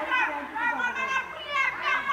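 A group of voices, children's among them, shouting and calling out over one another, high-pitched and excited, during an outdoor group game.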